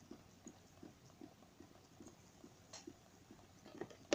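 Faint, even soft ticking, about two to three ticks a second, from a small 3D-printed PLA Stirling engine with a glass piston in a glass power cylinder, running on the cold of an ice cube. A slightly sharper click comes near the end.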